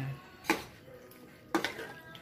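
Metal spatula knocking and scraping against a metal wok while tossing vegetables: one sharp clack about half a second in, then a quick run of three knocks near the end.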